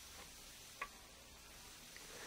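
Near silence: faint hiss with a single short, faint click a little under a second in.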